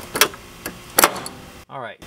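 Three sharp metallic clicks as the loosened negative terminal clamp is wiggled and pulled off the car battery's post, followed near the end by a short murmur.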